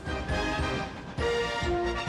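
Television sports broadcast theme music, the bumper that takes the telecast into a commercial break: sustained pitched chords that shift to a new chord a little over a second in.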